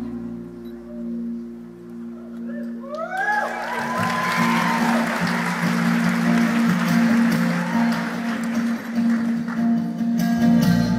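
An audience applauding and cheering, with a few rising whoops about three seconds in, after the last sustained notes of a song fade out.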